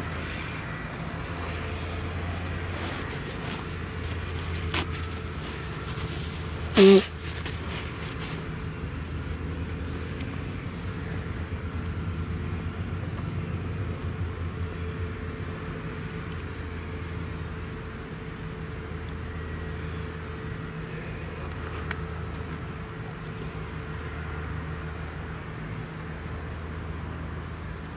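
Claas Jaguar 970 self-propelled forage harvester running steadily at a distance while chopping maize, a low, even engine drone. A short, loud sound breaks in about seven seconds in.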